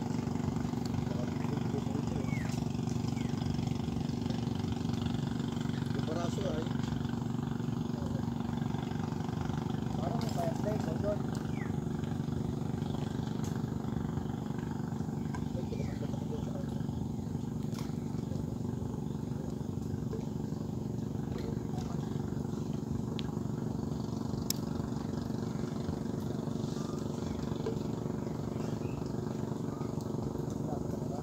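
A steady engine hum with no change in pitch or level, under faint background voices of people talking.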